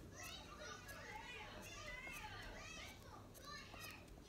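Faint voices of children playing and calling, high and shrill, overlapping throughout.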